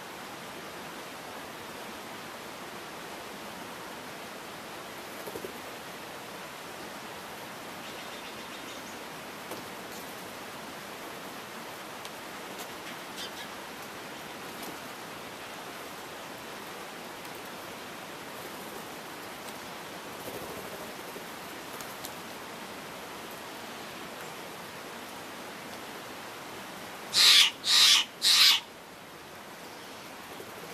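Steller's jay giving three loud, harsh calls in quick succession near the end, over a steady background hiss.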